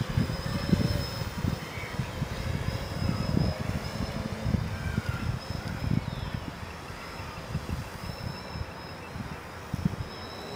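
Distant octocopter's electric motors and propellers giving a thin, steady high buzz overhead. Gusty wind buffets the microphone and eases off in the second half.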